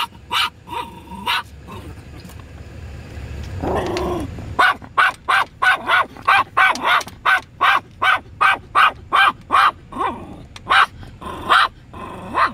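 Chihuahua barking: a few barks at first, then a short lower sound about four seconds in, then a fast run of sharp barks, about three a second, through most of the rest.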